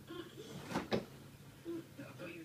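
Two quick knocks about a fifth of a second apart, over faint background voices.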